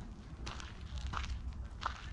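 Faint footsteps at a walking pace, three steps a little over half a second apart, over a low rumble.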